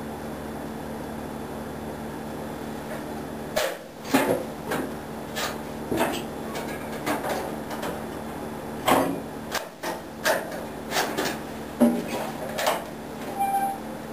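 A steady hum, then from about four seconds in a string of irregular clunks and clicks as a John Deere Model L tractor is tried for a start. The engine never catches, the sign of a battery that is dead.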